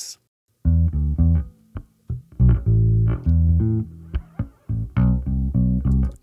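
Electric bass guitar track played back soloed and dry, with no compression on it: a line of plucked notes that starts under a second in and pauses briefly around two seconds in. The timing of the playing is not the tightest.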